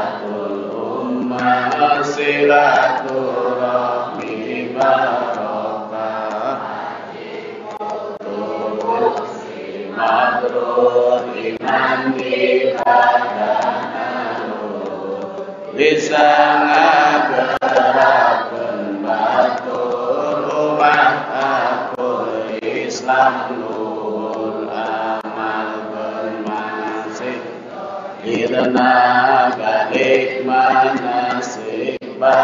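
Chanted religious recitation in long, melodic phrases, sung into a microphone, with several voices chanting together. It gets louder about halfway through.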